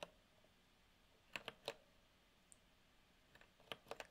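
Near silence: room tone broken by a few faint clicks in two small groups about two seconds apart.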